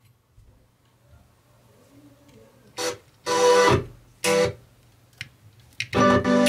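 Guitar music played through a Class D amplifier board into a speaker. It cuts out, returns in three short bursts around the middle, and comes back fully at the end, as the speaker wires are being worked at the board's output terminals. A faint low hum fills the gaps.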